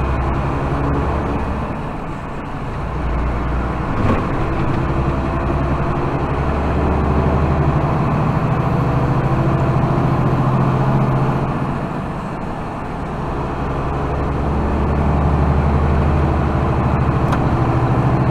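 Truck engine heard from inside the cab, running steadily under road noise as the truck pulls onto the highway and picks up speed, dipping in loudness around two and twelve seconds in. A single sharp click about four seconds in.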